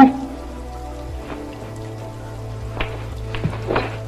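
A steady background hum with overtones, under a few faint short knocks and scuffs from a man's shoes and body moving through a kung fu tiger form, the last of them about three and a half seconds in.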